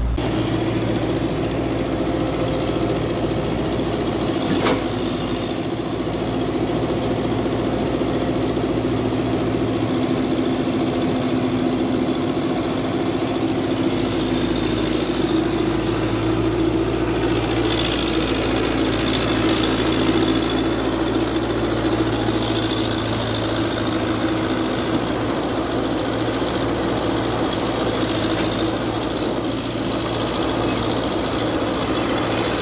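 Diesel engine of a Jonyang wheeled excavator running steadily while it digs and loads garbage. There is a single sharp knock about five seconds in and a harsher, noisier stretch a little past the middle.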